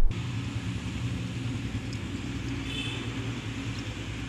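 Steady low outdoor rumble with a faint hum underneath, and a brief faint high tone about three seconds in.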